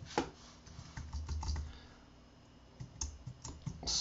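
Typing on a computer keyboard: short runs of key clicks, with a pause of about a second in the middle before a final run near the end.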